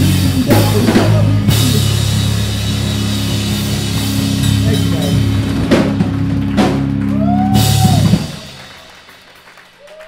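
A pop-punk band playing live: distorted guitar and bass chords with drum-kit hits and cymbal crashes. The band stops about eight seconds in and the sound dies away quickly.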